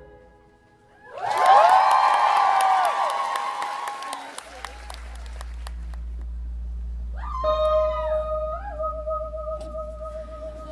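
A club audience cheering, whooping and whistling with some clapping as a song ends, dying down after a few seconds. A low steady hum then sets in, and near the end a long held note with a slight wobble begins.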